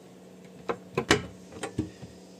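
A small wooden cabinet door being opened: a handful of light clicks and knocks from its catch and hinges.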